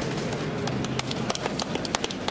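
Outdoor town-square background noise with a run of small, sharp clicks and ticks from about half a second in.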